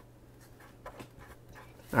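Faint short strokes of a felt-tip marker writing a word on paper, over a steady low hum.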